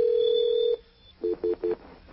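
Telephone line tones heard over a phone call: one steady tone lasting under a second, then three short two-note beeps, as the call is transferred to another extension.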